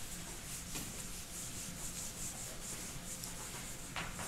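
Whiteboard eraser wiping marker off a whiteboard in quick, repeated rubbing strokes.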